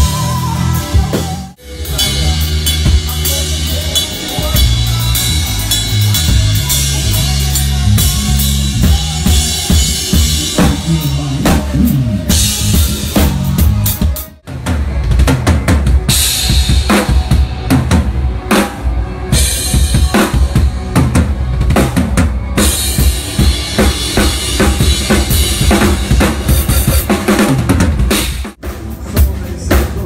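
Drum kit and electric bass playing live together: fast grooves and fills with bass drum, snare and ringing cymbals over a moving bass line. The music drops out briefly twice, about a second and a half in and about halfway through.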